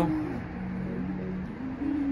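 A man humming a low, steady "mmm" for about a second, then a shorter hum at a higher pitch near the end.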